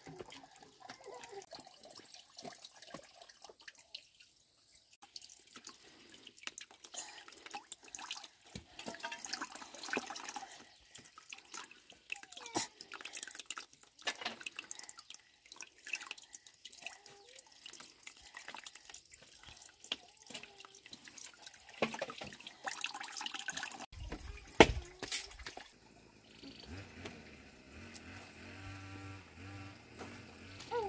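Water running from a plastic pipe into a plastic basin and splashing as small hands wash in it, with uneven drips and splashes. A single sharp knock stands out late on.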